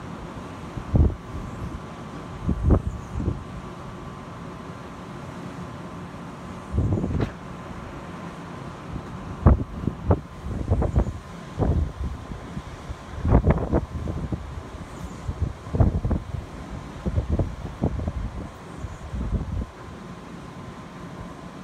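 Wind buffeting the microphone in irregular gusts, each a second or less, over a steady background rush.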